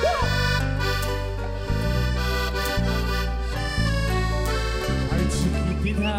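Live mariachi band with accordion playing an instrumental passage: sustained accordion chords over deep bass notes that change about once a second.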